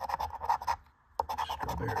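A coin scraping the scratch-off coating of a paper lottery ticket in quick, rapid strokes, with a short pause about a second in before the scratching resumes.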